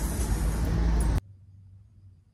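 Wind buffeting the phone's microphone outdoors, a loud low rumble that cuts off suddenly a little over a second in, leaving a quiet room with a faint low hum.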